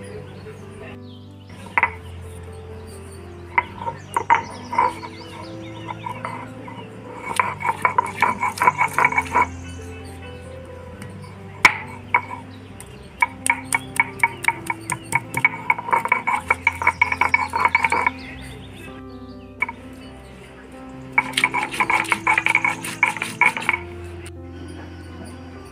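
Rapid runs of sharp clacks as garlic, coriander and cumin are crushed with a stone roller on a flat grinding stone, coming in three bursts with the longest in the middle. Background music plays throughout.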